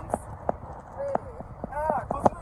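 Brief snatches of a voice over a run of sharp clicks, a few a second.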